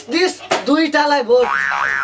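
A short stretch of speech, then near the end a springy comedy 'boing' sound effect: two quick rising-and-falling pitch sweeps.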